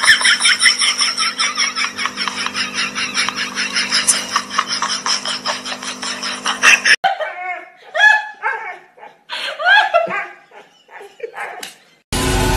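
A person laughing hard in fast, rapid pulses that cut off sharply about seven seconds in, followed by a few shorter, separate bursts of voice.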